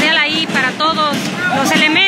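A voice singing with a wavering vibrato over music, at a steady high level.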